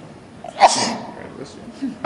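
A person's voice: one sudden loud burst about half a second in that fades away over about half a second, and a shorter burst near the end.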